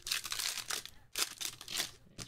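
Trading-card pack wrapper being torn open and crinkled in the hands: dense crackling rips in two bouts with a short break about a second in.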